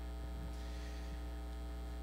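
Steady electrical mains hum: a low, even buzz with a ladder of faint higher overtones and no other sound.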